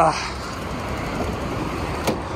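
Steady background noise of road traffic going past, a low even rumble with no distinct events.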